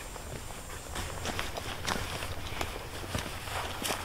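Footsteps on dry, leaf-strewn ground, irregular steps from about a second in, over a steady low rumble.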